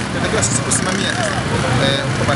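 A man speaking over the steady noise of motor vehicle engines running nearby, with a busy outdoor background.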